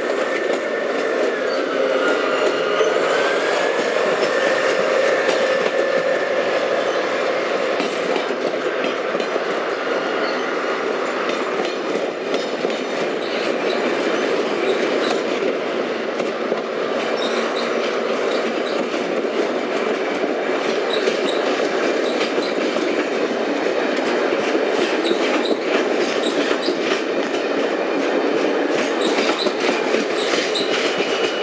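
Steady, loud rumbling noise of a vehicle in motion. A squealing tone dips in pitch and rises again about two to four seconds in.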